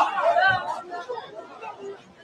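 Speech only: talking that is loudest in the first second and fainter after.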